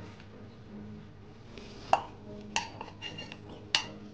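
Peeled ginger pieces dropped by hand into a stainless-steel mixer-grinder jar. They make several light clinks against the metal, each with a short ring, over the second half. The sharpest comes about two seconds in and another near the end.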